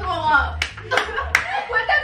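Three sharp hand claps in quick succession over excited, laughing voices.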